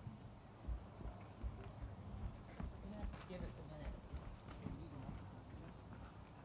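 Faint, irregular knocking and thumping, with faint voices in the background.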